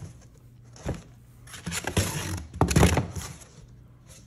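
Cardboard shipping box being handled and lifted away: a light knock about a second in, then a couple of seconds of cardboard scraping and rustling.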